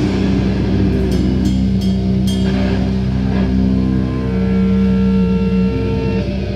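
Loud live death metal band: distorted electric guitars and bass hold long ringing chords, with a few cymbal crashes about one to two seconds in.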